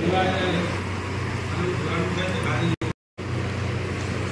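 Indistinct voices over a steady low hum, with the sound cutting out completely for about a third of a second near three seconds in.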